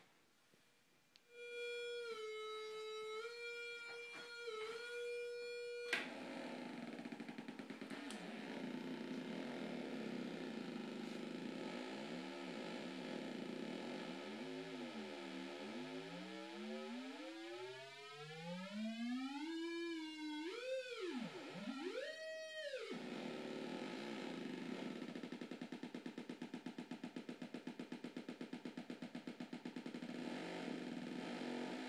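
Homemade 555-timer synthesizer played through a mini Vox amp, its pitch set by a photo sensor: a steady tone with a few small dips starts about a second in. From about six seconds a lower buzzy tone slides down and up in pitch, then climbs in wide swoops, before settling to a steady low buzz that flutters near the end.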